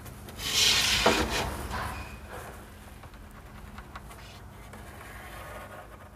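Pencil scratching along a steel ruler on the cabinet's base panel as a line is marked. The rubbing is loudest in the first two seconds, then goes on fainter as the ruler and hands shift on the board.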